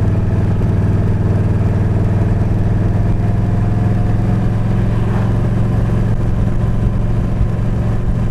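Yamaha V-Star 1300 Deluxe's V-twin engine running steadily at cruising speed, heard from on the bike.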